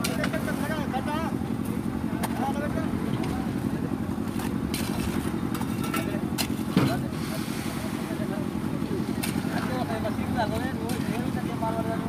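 Construction machinery engine running steadily with a fast, even chug, under distant shouting voices. Shovels and tools knock and scrape on wet concrete, with one sharp knock about seven seconds in the loudest.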